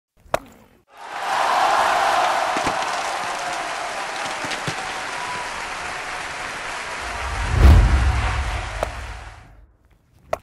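Title-sequence sound effects: a long wash of noise that swells in and slowly fades away, with a few sharp clicks and a deep boom a little over seven seconds in.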